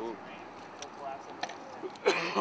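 A few short metallic clicks and jingles over a quiet background, with faint snatches of a voice.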